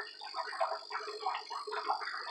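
Small animals chirping in the background: quick, repeated short calls over a steady high-pitched hum.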